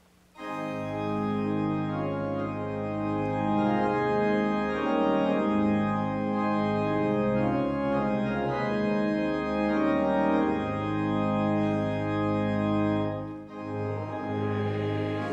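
Church organ playing the introduction to a psalter hymn before the congregation sings: held chords that change every second or so, starting about half a second in and breaking off briefly near the end.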